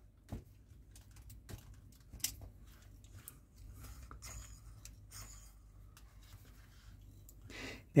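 Faint handling noises of a plastic scale-model chassis and wheel: a few scattered light clicks and soft rubbing as the parts are held and turned.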